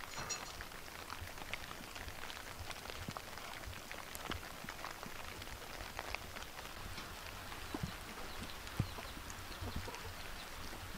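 Light rain falling, a soft steady patter with scattered single drops ticking on leaves and mulch.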